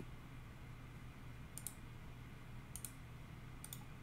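Faint computer mouse clicks in three brief clusters about a second apart, the last of them the right-click that opens a context menu, over low room hiss.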